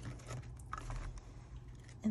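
Paper bills and envelopes being handled: soft rustles with a few small scattered clicks.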